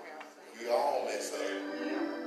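A man's voice speaking at the pulpit, holding one drawn-out note near the end.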